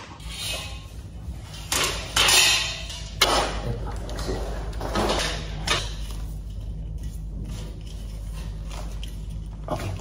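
Flat-pack furniture parts being handled and fitted: several short knocks, clinks and scrapes of metal frame bars and panels against each other and the floor, over a steady low hum.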